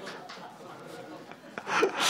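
Hushed, breathy laughter, breaking into louder laughs near the end.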